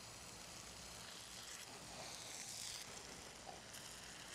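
Faint, steady background hiss with no distinct sound standing out.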